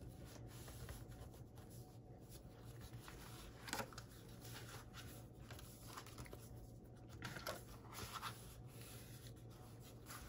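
Faint rustling and rubbing of hands smoothing and handling paper album pages and cardstock, with a few slightly louder paper rustles about four, seven and eight seconds in, over a low steady hum.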